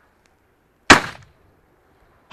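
A single shotgun shot about a second in, loud and sharp, ringing away briefly afterwards.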